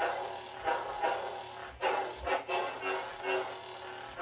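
Homemade Arduino lightsaber's speaker playing its steady hum, broken by a quick run of about six swing sounds. Each swing sound starts suddenly and fades, triggered when the board's MPU-6050 motion sensor detects the blade being swung.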